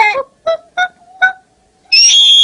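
A young singer's high voice, unaccompanied: a held note ends, then three short clipped sung notes follow, about three a second. Just before the end a very high, loud held note starts suddenly.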